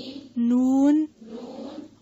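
A woman's voice slowly reciting Arabic letter names in a drill, each a drawn-out syllable that rises slightly in pitch, about one every second and a half, with a soft hiss between them.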